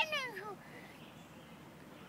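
A young child's short, high-pitched wordless vocalization at the very start, its pitch rising and then falling over about half a second, followed by faint background.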